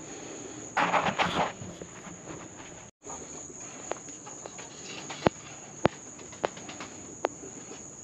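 Wooden feeder leg being nailed on: a brief scraping rustle about a second in, then several sharp knocks spaced roughly half a second apart. A steady high chirring of crickets runs underneath.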